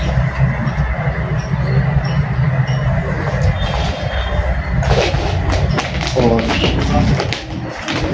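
A steady low machine-like hum with a wash of background noise, joined by rustling and handling sounds from about five seconds in.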